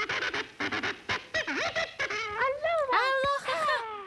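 Cartoon boy's exaggerated blubbering cry: a wavering, sobbing voice that slides up and down in pitch, breaking into higher swooping wails in the second half.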